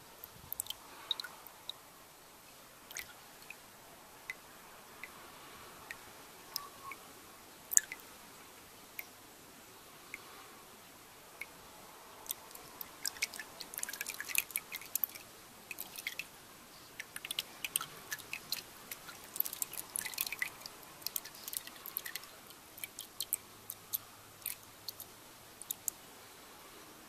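Diesel fuel dripping and trickling off the old fuel filter element into the pool of fuel in the filter housing while the element drains. Irregular small drips, coming thicker in spells.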